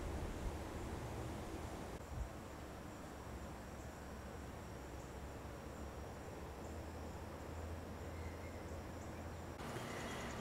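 Faint outdoor evening ambience: steady high-pitched insect trilling over a low background hum.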